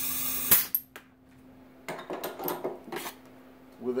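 Compressed shop air hissing steadily into the underdrive clutch circuit of a 68RFE transmission on an air-test stand, cut off about half a second in with one sharp pop as the air is released. A few light clicks and knocks follow.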